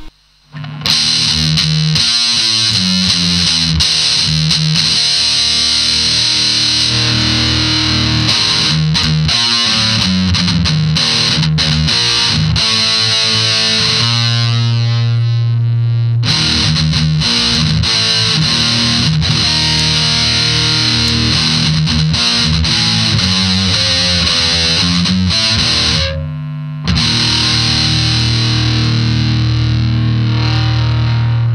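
Electric guitar through a Boss Metal Zone MT-2 distortion pedal plugged directly into the amplifier, on the neck pickup, playing heavily distorted riffs with a long held note about halfway through. The tone is super trebly, "like a mosquito": the typical harsh sound of this pedal run straight into an amp, even with the treble turned all the way down.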